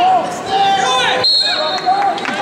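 Shouting voices in a gym during a wrestling bout: short, repeated calls throughout. A steady high-pitched tone comes in a little past halfway.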